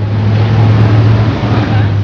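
A motor vehicle's engine running close by: a loud, steady low hum with a rushing noise over it.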